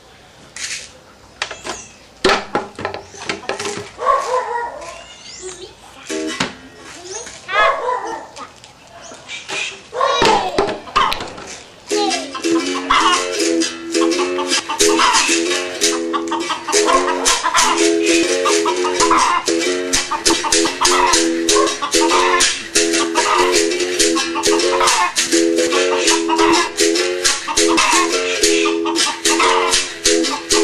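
Berimbau with a caxixi basket rattle: from about twelve seconds in, a steady rhythm of the struck steel string switching between two notes, with the caxixi shaking on every stroke. Before that, irregular taps and rattles with a voice.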